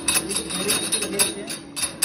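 Rotor of a hammer-type rice-husk pulverizer turned by hand, its hardened steel hammer blades swinging loose and clinking against each other and the frame in a quick, irregular string of sharp metallic clicks.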